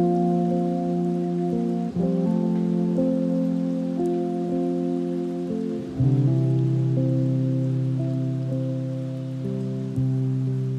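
Mellow lofi hip hop instrumental: sustained soft chords over bass. The chord changes about two seconds in, and a deeper bass note comes in about six seconds in, over a faint hiss that sounds like rain.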